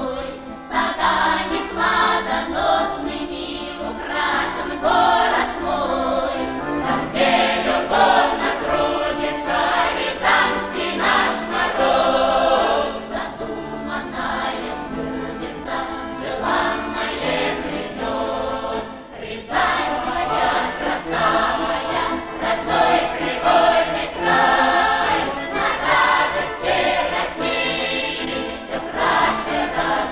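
A Russian folk choir of women's and men's voices singing a song in parts, accompanied by accordions. The singing breaks off briefly a little past halfway, then the next phrase begins.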